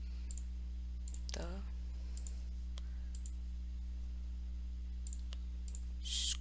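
Computer mouse clicks, about six spread unevenly, each entering one letter on an on-screen calculator emulator, over a steady low electrical hum.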